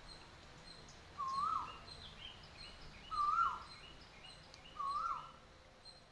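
A bird calling a short whistled note that rises and then drops, repeated about every two seconds, three times, over faint steady background noise.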